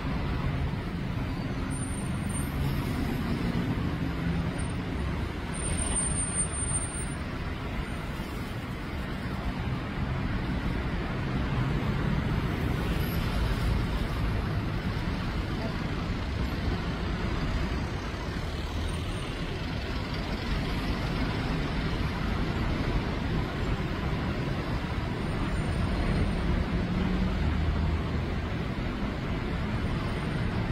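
Steady road traffic noise: engines of cars, trucks and buses idling and passing.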